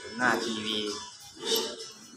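A man speaking briefly in Thai over background music.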